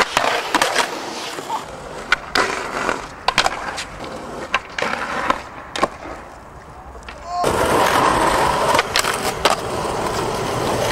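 Skateboard sounds: urethane wheels rolling on concrete and asphalt, with a dozen sharp clacks of the board popping and landing, and the board hitting a concrete ledge near the start. The rolling noise swells and runs steady over the last couple of seconds.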